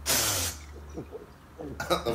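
A burst of television static hiss, about half a second long, cutting off abruptly.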